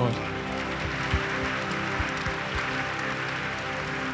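A church congregation applauding in praise, a steady spread of many hands clapping over held keyboard chords, with a few low thumps in the middle.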